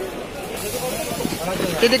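Other people's voices in the background, with a short, high rustling hiss about half a second in, as a handful of dry garlic bulbs is scooped from the heap by hand.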